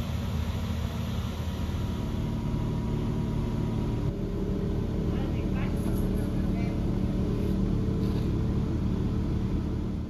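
Heavy diesel engine of a mobile crane or truck running steadily, a low even hum.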